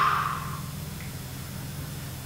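A man's long audible out-breath, fading away within the first second, over a steady low hum.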